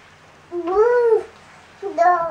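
A house cat meowing: one drawn-out meow that rises and falls in pitch about half a second in, with another call starting near the end.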